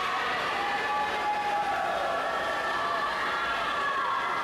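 Crowd of spectators and teammates cheering and shouting during a swimming race in an echoing indoor pool hall. The high-pitched voices are held and rise and fall steadily throughout.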